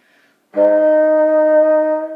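Bassoon playing a single held D-sharp/E-flat, fingered one-two, one-two-three, as part of a slow chromatic scale. The note begins about half a second in and holds steady at one pitch.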